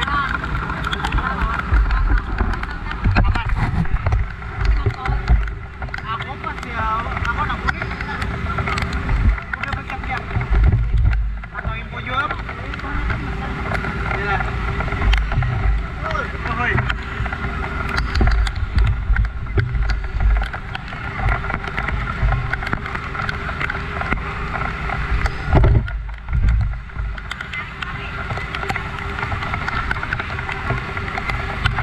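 An engine running steadily under indistinct voices, with low wind and handling rumble on the microphone.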